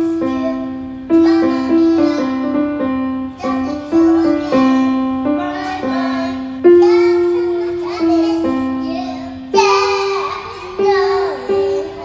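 A young girl playing a portable electronic keyboard on its piano voice, chords and melody notes struck and dying away in a steady pop rhythm. She sings along in a child's voice near the end.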